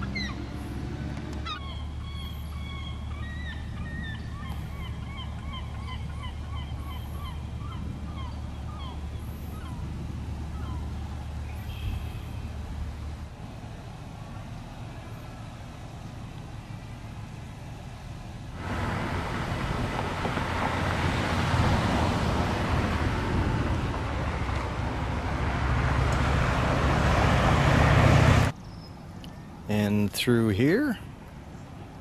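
Outdoor ambience: birds calling repeatedly over a low steady hum for the first several seconds. After a cut, a loud rushing noise sets in suddenly, builds, and stops abruptly near the end.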